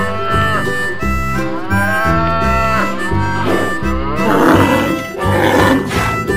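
Background music with a melody over a steady bass line. About three and a half seconds in, a cattle sound effect comes in: two loud, noisy calls one after the other.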